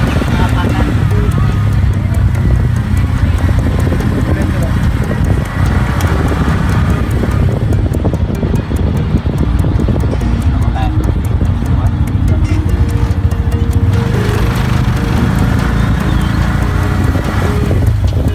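Engine and road noise of a moving vehicle, heard from inside it: a steady low rumble.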